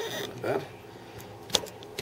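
A single sharp click about one and a half seconds in, from the camera's tripod being handled and steadied.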